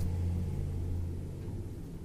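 A low rumble, strongest at the start and fading over the first second and a half, in a pause between speech.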